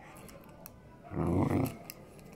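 Samoyed puppy giving one short, low play growl about a second in, lasting about half a second.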